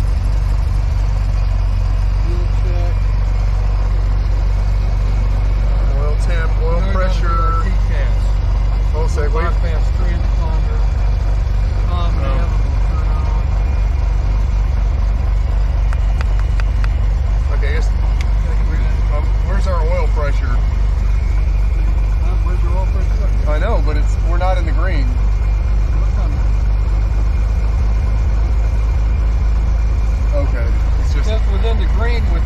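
Cessna 175's piston engine running steadily at low power on the ground, heard from inside the cockpit with the propeller turning. It is an engine run made to bring out an oil leak.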